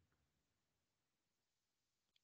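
Near silence: a pause with no sound, likely gated by the call's noise suppression.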